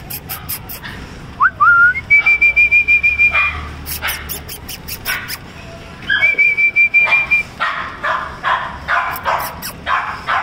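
Cocker spaniel puppies whining and yipping. A high warbling whistle is held about a second and a half, twice.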